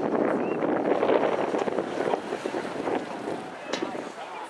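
Outdoor wind buffeting the camera microphone in a steady rush that eases off toward the end, with faint voices under it.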